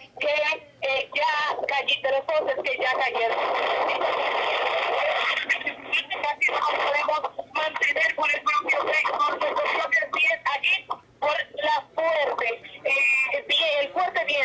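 Speech: a voice talking almost without a break, its sound like a live field report.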